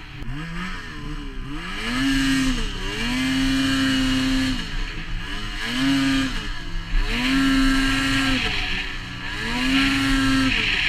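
Ski-Doo Summit 600 E-TEC two-stroke engine with an MBRP trail can exhaust, pulling the sled through deep powder. The revs climb and hold steady under load, then dip briefly between throttle pulls, about four times. The engine runs on an ibackshift.com clutch kit being tested, which sets the rpm it holds.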